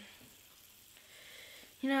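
Faint, steady hiss of background noise with no distinct events; a boy's voice starts near the end.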